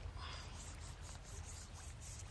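Faint outdoor background with a high, evenly pulsing insect chirp, typical of a cricket, over a low rumble.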